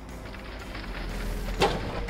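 Cartoon sound effect of a cement mixer truck working its drum, a steady motor-like running sound over soft background music, with one short knock about one and a half seconds in.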